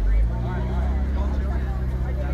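McLaren supercar's V8 engine running at a steady low idle, a little louder for a moment at the start, with crowd chatter faintly over it.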